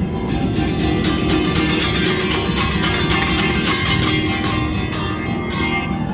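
Acoustic guitar strummed fast and steadily, easing off slightly near the end.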